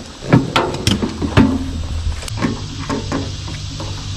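A handful of sharp knocks and clunks, most of them in the first half, from handling a scrapped stainless steel kitchen sink and its fittings, with a low steady hum underneath from about halfway.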